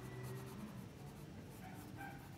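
Pencil drawing on notebook paper: faint scratching of the lead on the page.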